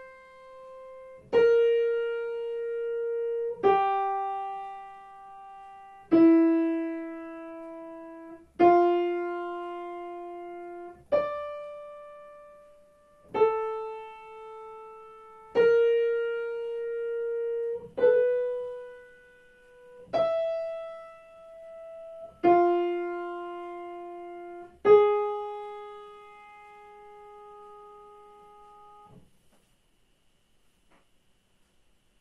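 Digital piano playing a slow single-note melody in F major, one note about every two and a half seconds, each struck and left to die away, the last note held long: a melodic dictation in half notes played for a student to write down.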